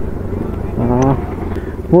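Motorcycle engine running steadily while the bike is ridden, a low rumble under road and wind noise.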